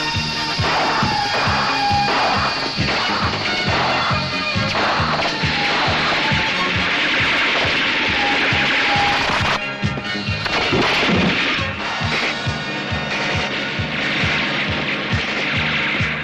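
Film soundtrack music with a steady beat. About ten seconds in the beat gives way to a noisy swoosh that falls in pitch, under continuing music.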